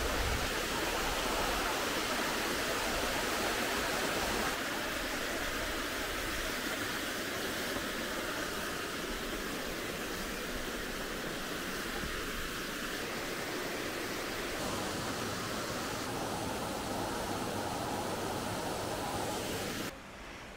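Steady rush of a forest stream running over small rocky cascades, easing slightly after about four seconds.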